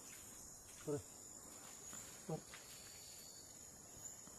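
Faint steady high-pitched drone of insects in the vegetation. Two short calls slide sharply downward in pitch, about a second in and again past two seconds.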